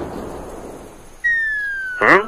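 Cartoon sound effects: a fading rush of noise, then, about a second in, a single steady whistle gliding down in pitch. It is the classic falling-whistle cue for something dropping through the air.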